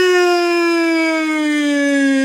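A man's voice holding one long, loud, high-pitched cry on a single note that sinks slowly in pitch.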